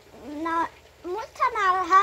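A woman speaking Thai in a high, sing-song voice: a short phrase, then a longer drawn-out one that falls in pitch.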